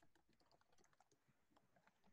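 Very faint, irregular clicking of a computer keyboard being typed on.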